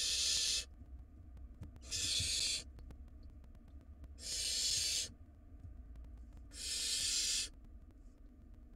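Barn owl nestlings giving their rasping hiss calls, the 'snoring' of owlets begging for food: four hisses of just under a second each, repeating about every two and a half seconds, the first right at the start.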